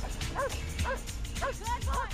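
A dog barking repeatedly, over background music with a steady low beat.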